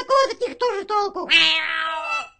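Cartoon cat meowing, voiced by a person: short sounds, then a longer, slightly falling meow in the second half.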